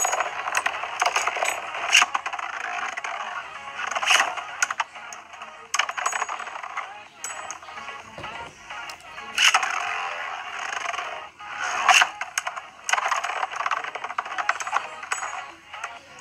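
Beyblade spinning tops running and clashing in a plastic stadium, with a string of sharp metallic clicks from the hits, over background music.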